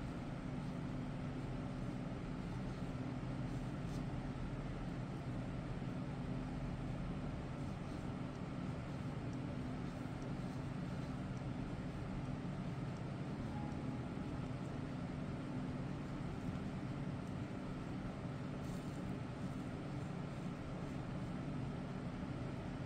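Steady low hum with a faint hiss, unchanging throughout, with no distinct sounds: background room noise.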